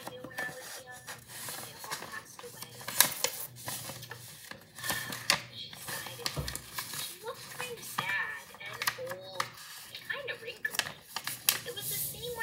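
A sheet of paper being folded by hand on a hard countertop: rustling and sliding, with scattered sharp taps and crackles as the creases are pressed flat.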